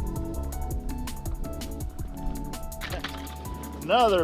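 Electronic background music with a steady, fast drum beat.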